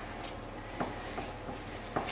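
Faint, soft squishing of a gloved hand kneading soft, still-sticky dough in a glass bowl, with a few light knocks against the bowl.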